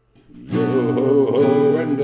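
A sea shanty begins: acoustic guitar strumming with a man singing, starting about half a second in.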